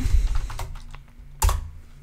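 Typing on a computer keyboard: a few light key clicks, with one sharper keystroke about one and a half seconds in.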